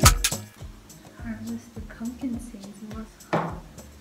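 A kitchen knife clicking against a cutting board as pumpkin is cut and handled, under quiet mumbling. A short scraping noise comes about three seconds in.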